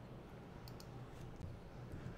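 Faint clicks of a computer mouse button: a quick pair about two-thirds of a second in and a few fainter ones later, over a steady low hum.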